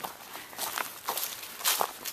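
Footsteps crunching through dry fallen leaves: a few irregular crunches, the loudest near the end.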